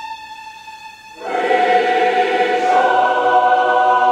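A violin holds a long note, then a mixed choir comes in loudly about a second in, singing sustained chords with it, the sound filling out with deeper notes about three seconds in.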